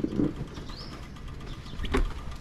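Quiet outdoor background with a low steady rumble, a short low sound at the very start, and a single brief high bird chirp about a second in.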